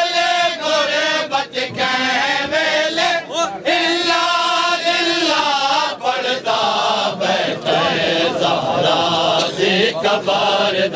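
Men chanting a Punjabi noha, a Shia lament, in unison. The voices are held and sung without a break.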